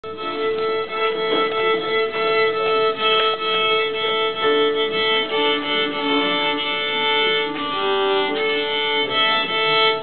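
Fiddle and uilleann pipes playing a tune together, a steady drone held under the melody line; the tune stops abruptly at the very end.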